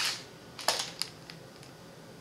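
Plastic packaging being handled: a few short crinkles and clicks, the sharpest about two-thirds of a second in and another at one second, then fainter ticks.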